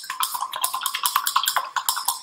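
Paintbrush being rinsed in a water cup, swished and knocked against its sides: a rapid clatter of about seven knocks a second.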